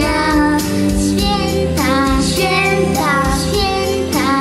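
Young girls singing together into handheld microphones, in short sung phrases over musical accompaniment.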